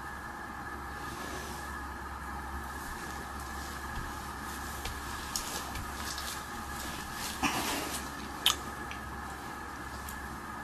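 Steady background hum with soft handling noises of a cake being assembled on a plastic cutting board: rustles and light taps as a sponge layer is pressed down, a short scrape a little after halfway and a sharp click near the end.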